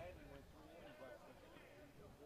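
Near silence with faint, distant chatter of voices around the ballpark.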